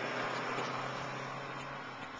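Steady traffic and car noise heard from inside a car waiting at a red light, slowly getting quieter. A low hum drops away near the end.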